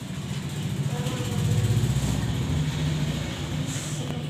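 A motor vehicle's engine running: a low steady rumble that grows louder through the middle and then eases off.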